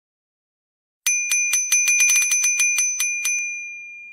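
A bicycle bell rung rapidly, a quick run of about fifteen dings starting about a second in, then its ring fading away.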